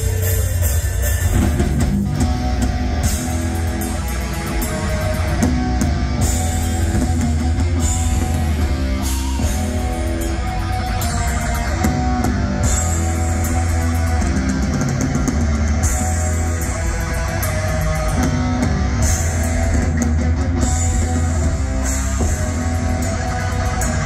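A black metal band playing live at full volume: distorted electric guitars, bass and a pounding drum kit in a dense, continuous wall of sound, heard from within the audience.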